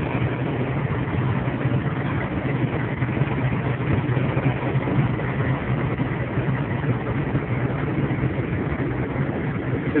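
Cab interior of a truck at highway speed: a steady engine drone with road noise, unchanging throughout.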